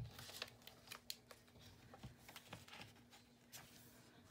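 Very faint rustling of paper calendar pages with a few soft clicks as they are fed onto the metal rings of a mini three-ring binder.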